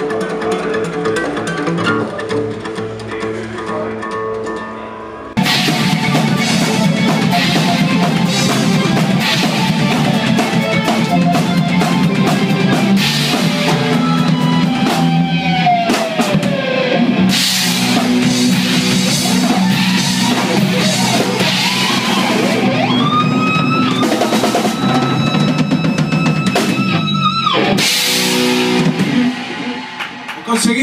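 Steel-string acoustic guitar played solo. About five seconds in, it cuts abruptly to a loud rock band: drum kit, electric bass and electric guitar, with guitar notes gliding down and later up in pitch.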